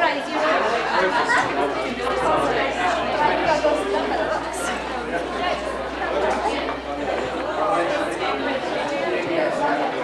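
Many people talking at once in a large room: the indistinct, overlapping chatter of a crowd of guests greeting one another, with no single voice standing out.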